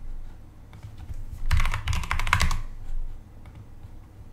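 Computer keyboard typing: a quick run of keystrokes lasting about a second, entering a short word, with a few lighter key clicks just before it.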